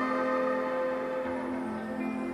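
Slow ambient background music of long held tones layered over one another, one of them fading out near the end.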